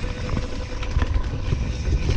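Mountain bike descending a dirt trail at speed: wind rumble on the helmet-mounted camera's microphone, with tyres rolling over dirt and leaf litter and short rattling ticks from the bike.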